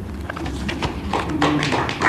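Light, scattered applause from a small audience: a quick run of separate claps.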